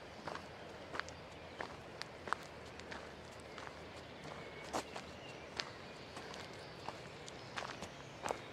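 Footsteps on a dirt forest trail, an uneven tread of short scuffs about one or two steps a second.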